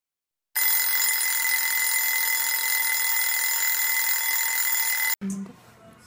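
TV test-card tone: a steady, high-pitched electronic tone over a hiss. It starts about half a second in and cuts off sharply about five seconds in.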